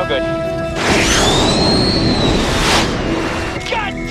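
Sustained rock-music chords break off about a second in for a loud rushing jet-engine pass lasting about two seconds, with a whistling tone that rises and then falls, before the music returns faintly.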